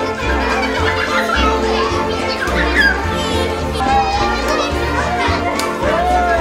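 Lively children's chatter and excited exclamations over background music with a steady bass beat.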